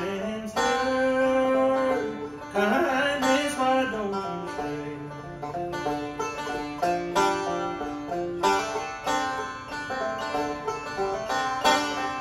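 A bluegrass string band playing an instrumental break: banjo picking with acoustic guitars and a resonator guitar (dobro), with some sliding notes a few seconds in.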